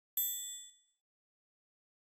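A single bright chime sound effect for a TV channel logo, struck once with a clear high ring that fades away in under a second.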